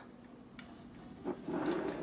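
Quiet kitchen handling noises: a soft knock on the countertop a little past the middle, then a brief rustle near the end as dishes are moved.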